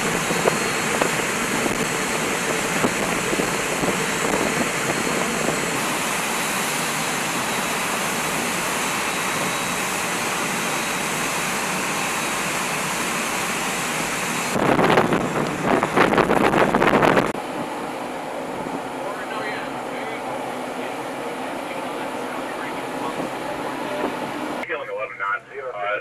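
A small boat running fast at sea: a steady rush of wind across the microphone mixed with water and engine noise. It grows louder for a few seconds about fifteen seconds in, then eases.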